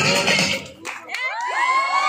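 Loud dance music that cuts out a little before halfway, followed by a crowd cheering and whooping.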